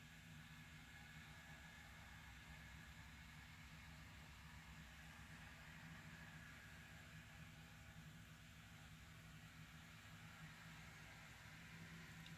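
Near silence: room tone, a faint steady hiss with a low hum.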